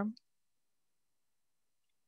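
The last spoken word trails off just after the start, followed by near silence.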